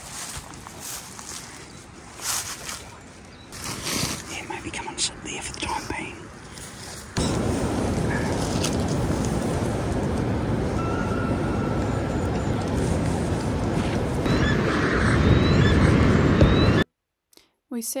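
Scattered rustling and brushing of bush vegetation against the camera for the first several seconds. Then, about seven seconds in, a loud steady wind rumble on the microphone sets in and holds until it cuts off abruptly near the end.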